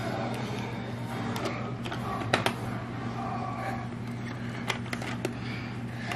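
Scattered light clicks and taps of a plastic activity ball toy being handled, over a steady low hum.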